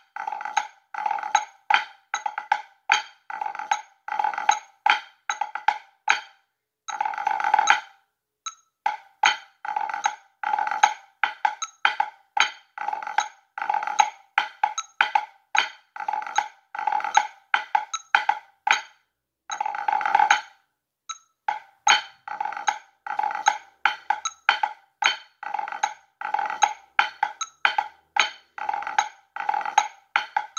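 Drumsticks on a rubber practice pad playing a pipe band snare score in 4/4 at 76 beats per minute: dense rudimental strokes in a steady march rhythm, with two longer rolls about a quarter and two-thirds of the way through.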